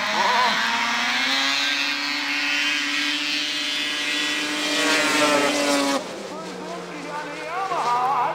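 Two snowmobiles racing down a grass drag strip, their engines running flat out at a high, steady pitch that climbs slightly. About six seconds in the sound drops off abruptly, leaving a fainter, lower engine tone with voices.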